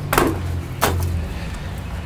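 Two brief handling sounds, a short clack-and-rustle about a quarter second in and another just before the one-second mark, as coils of antenna wire and coax are set down on a carpeted floor, over a steady low hum.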